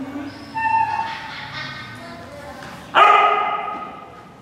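Dog barking and yipping in excitement: one call about half a second in and a louder one at about three seconds that trails off.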